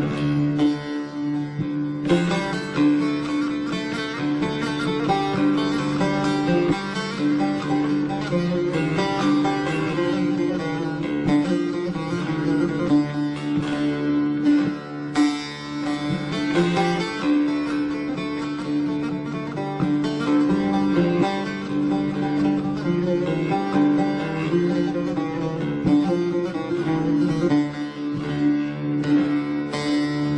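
Instrumental interlude of a Turkish folk song. A kanun is plucked in quick running phrases over steady low sustained notes, with no singing.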